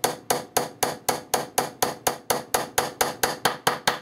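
Small brass hammer gently tapping tiny finishing nails into a thin wooden panel: a steady rhythm of light, sharp taps, about four a second.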